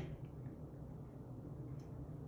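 Quiet room tone with a faint steady low hum and one light tick near the end.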